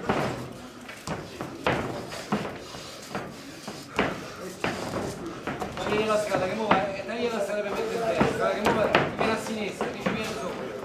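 Sharp slaps and thuds of boxing gloves striking, about ten scattered single hits. Men's voices shout and call out in the background, more in the second half.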